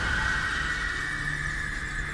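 Movie-trailer title-card sound design: a steady high-pitched ringing tone held over a low drone.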